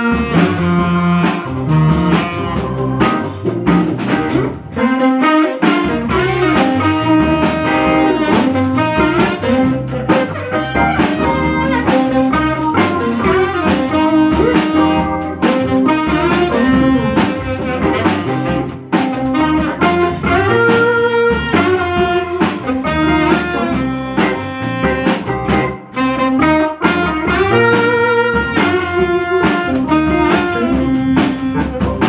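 Live blues-jazz band playing: saxophone, organ, electric guitar, electric bass and drum kit together, loud and continuous.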